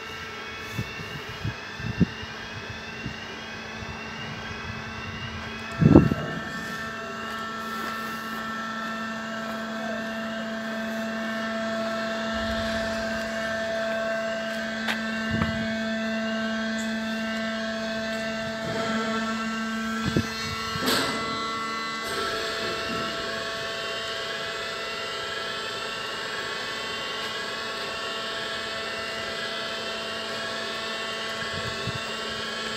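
Swing-bridge road crossing warning alarm sounding a repeating warble over a steady machinery hum, with the barriers down and the lights flashing. Two sharp knocks cut through it, one about six seconds in and a louder one about twenty-one seconds in.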